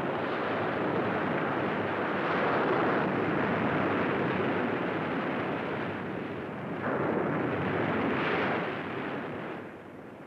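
Ocean surf breaking on a sandy beach: a steady rushing wash that swells about two seconds in and again about seven to eight seconds in, then fades away shortly before the end.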